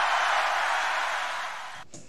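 The closing noise of a live metal concert recording at the end of a song: a steady wash of noise that fades slowly and cuts off abruptly near the end when playback stops.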